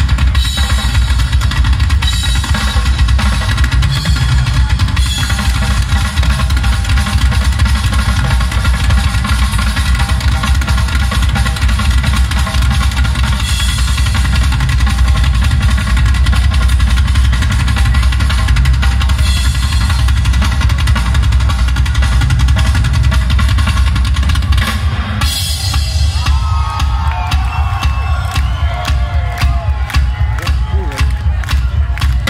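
Rock band playing live, loud, through the stage PA: a drum kit with a heavy bass drum drives it over held steady tones. About four seconds before the end the bass thins and gliding pitches come in.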